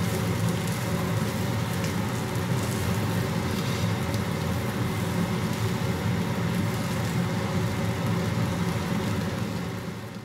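Prawns and buttered oat cereal frying in a nonstick pan, sizzling steadily as a spatula stirs them, over a steady low hum.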